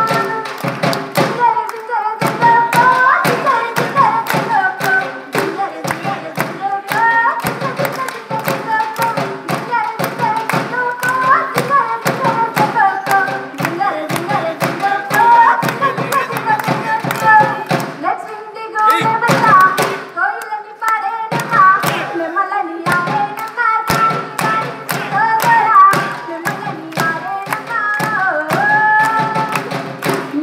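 A solo female voice singing a melodic song over a quick, steady beat of sharp percussive strikes.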